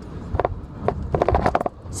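A woman's short run of laughter in quick pulses, over the low rumble of a car cabin on the road.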